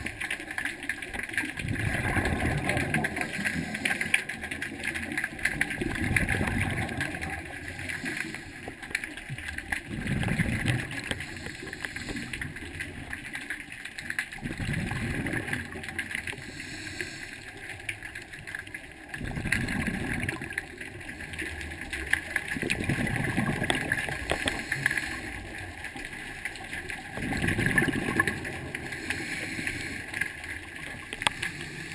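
Scuba diver breathing through a regulator underwater: a rumbling gush of exhaled bubbles about every four seconds, seven times in all, over a steady faint crackle.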